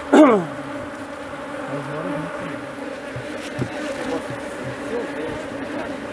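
Honeybees buzzing steadily in numbers around an opened hive, a dense wavering hum. A brief louder sound falls steeply in pitch at the very start.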